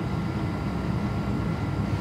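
Steady low rumble of a room air conditioner running in a pause between speech.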